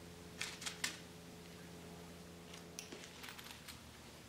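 Small metal watch parts clicking and rattling against each other in a plastic box as tweezers pick through them: a quick cluster of three clicks about half a second in, then a run of lighter clicks near the end.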